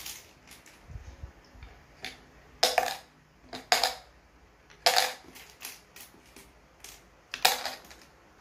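Small plastic buttons dropped one at a time into an empty plastic bottle, each landing with a sharp click or clatter. Four drops stand out louder among lighter clicks, at uneven gaps.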